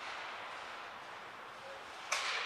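Faint, steady background noise of the ice rink, with no distinct impacts or calls.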